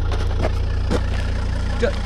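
Volvo car's engine idling with a steady low hum, with two sharp crunches on the gravel underfoot.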